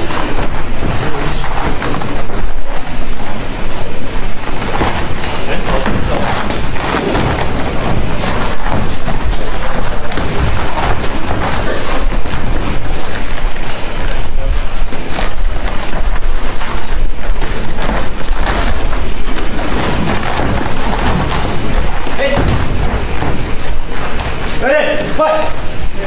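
Live sound of an amateur boxing bout: spectators and cornermen shouting over repeated thuds of boxing gloves landing. Near the end a voice calls "faster! come on! come on!"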